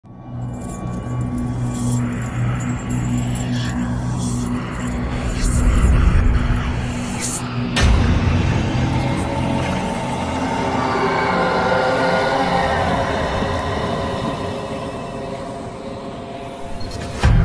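Cinematic logo-intro music and sound design: low sustained tones, a heavy impact hit about halfway through, then layered tones that swell and slowly fade.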